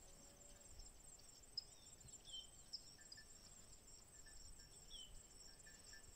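Faint rural ambience: insects calling in a steady, high-pitched drone, with a few short, high chirps of small birds.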